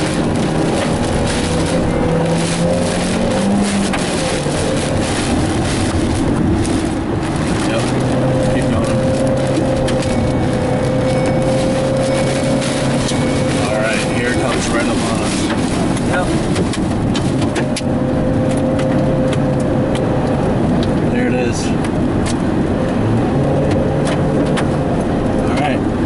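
Car engine and road noise heard from inside the cabin while driving through heavy rain, the engine note rising briefly about three seconds in and then holding steady. Rain and spray patter on the windshield as the wipers sweep.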